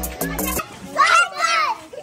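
Background music with a steady beat cuts off about half a second in, then a small child cries out loudly in a high-pitched voice for under a second.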